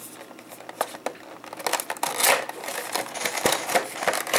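A cardboard toy box being opened and its clear plastic tray handled: rustling and crinkling of plastic and card, in a few bursts mixed with small clicks and scrapes.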